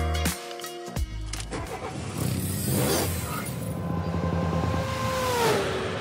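Beat-driven vlog music cuts off within the first half-second. A logo sting follows: a rising whoosh, then a steady engine-like hum under a held tone that slides down in pitch about five and a half seconds in, then starts to fade.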